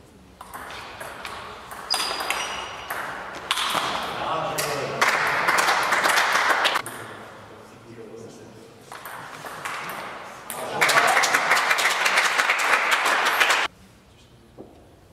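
Table tennis ball pinging off bats and table during rallies, broken by two loud bursts of spectators shouting and clapping, the second cut off suddenly near the end.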